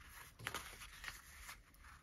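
Faint rustling of a paper strip being folded and creased by hand, with a couple of soft ticks about half a second in and near the end.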